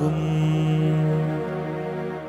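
Keyboard holding one steady low note in a pause between sung phrases of a devotional chant, slowly fading.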